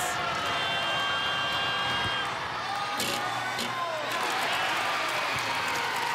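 Crowd in a college basketball arena cheering and whooping during a free throw, with a sharp knock about three seconds in.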